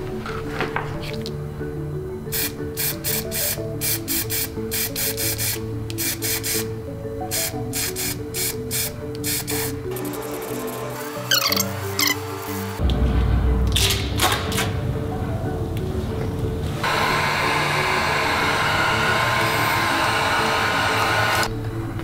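Background music runs throughout. In the second half an aerosol spray-paint can hisses steadily for several seconds, then stops shortly before the end.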